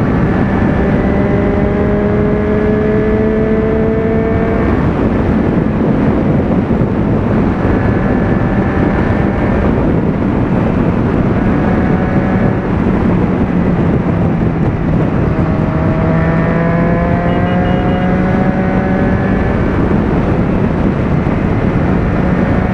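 Motorcycle engine running at steady highway cruising speed, about 140 km/h, its drone creeping slightly up in pitch twice, under a heavy rush of wind noise on the microphone.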